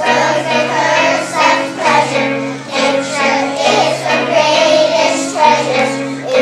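A group of children singing a song together over instrumental accompaniment with a steady bass line.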